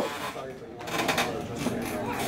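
Peak Bike cycle ergometer's flywheel and resistance mechanism whirring as the rider keeps pedalling slowly in the cool-down right after an all-out Wingate sprint, with faint voices in the room.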